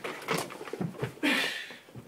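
Scuffling knocks and bumps as a person throws himself off a desk chair toward the floor, followed a little past one second by a short, loud, strained cry.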